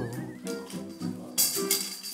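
Background music with shifting pitched notes. In the second half, a rattling, hissing sound effect runs for about a second.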